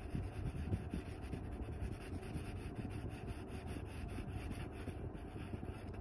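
Graphite pencil shading on sketchbook paper: a steady run of quick, short scratchy strokes.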